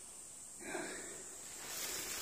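Faint rustling of leafy undergrowth, with one soft hiss a little over half a second in.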